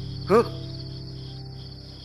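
Crickets chirping in a steady, high trill that runs unbroken as night-time ambience.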